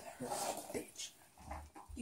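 Quiet, low murmuring voices with a few soft thumps.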